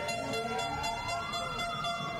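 Sustained horn-like tones, with one pitch slowly rising for about a second and a half and then easing back down.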